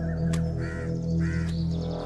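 A crow cawing twice, two short harsh calls about half a second apart, over a low sustained music score.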